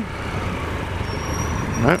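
Triumph Explorer XCa's three-cylinder engine running steadily at low revs, with an even noise hiss over it.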